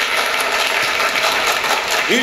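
An audience applauding, a dense and steady clatter of clapping.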